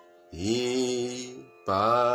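A man's voice singing two held notes of the melody as swara syllables, about a second each, the second sliding up into its pitch; a bamboo flute note ends right at the start.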